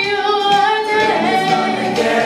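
Show choir singing together, with a female soloist's voice at the microphone; the voices hold notes that step in pitch.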